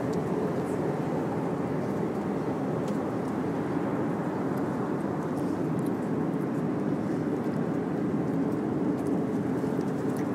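Steady airliner cabin noise: the even, unbroken rush of the engines and airflow heard from inside the passenger cabin.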